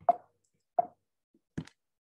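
Three short, soft pops or taps, evenly spaced about three-quarters of a second apart.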